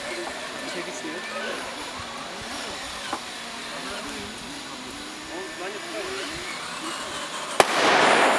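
Voices chatting, then near the end one sharp bang of a 'torpil' firecracker, followed by a loud rushing noise that dies away over about a second.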